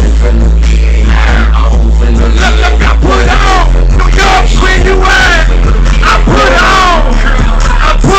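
A hip-hop backing track with a heavy, steady bass, played very loud through an outdoor stage PA, with a pitched vocal line over it.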